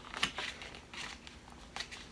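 A paper plate being folded and its crease pressed flat by hand on a tabletop: a few short, faint crackles of stiff paper.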